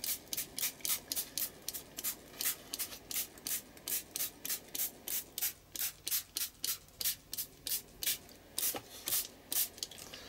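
Small water mister pumped rapidly over a page, about four short hissing sprays a second, wetting dropped acrylic inks so they run.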